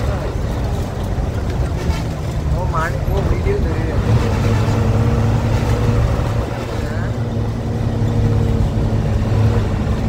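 Coach engine and road noise heard from inside the passenger cabin at highway speed, a steady low drone. About four seconds in, the engine note rises and holds steadier and louder, as under harder pull.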